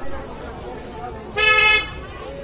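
A single short vehicle horn toot, one steady pitch lasting under half a second, about a second and a half in, over faint street chatter.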